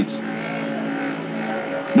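A steady low mechanical hum with a constant drone, unchanging throughout.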